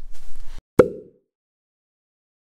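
Faint rustling noise for about half a second, then a single short pop about a second in, ringing out briefly before dead silence.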